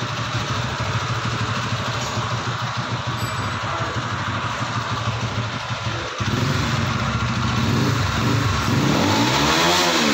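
A motor vehicle engine running nearby under steady background noise. It grows louder about six seconds in, and near the end its pitch rises and falls.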